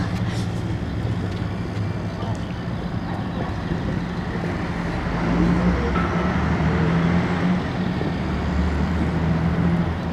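Street traffic: a steady low engine hum from a nearby motor vehicle over road noise.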